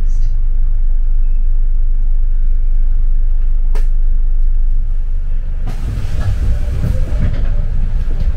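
Double-decker bus heard from the upper deck: a steady low engine and road rumble, with a single sharp click about halfway. Near the end it turns rougher and noisier, with more hiss and rattle.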